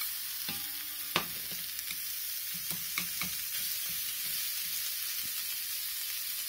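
Thin beef slices in a soy-sauce dredge sizzling steadily in a frying pan, with a few sharp clicks of chopsticks against the pan as the pieces are turned, the loudest about a second in.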